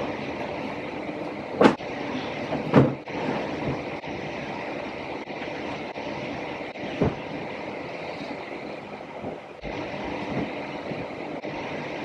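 Bedding being handled while a bed is made: a steady rustling rush of sheets and duvet with three short knocks.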